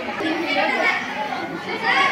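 Indistinct chatter: several voices talking at once in a room, with no clear words.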